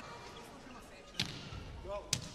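A volleyball struck on a serve: one sharp smack about a second in, over a faint hall ambience.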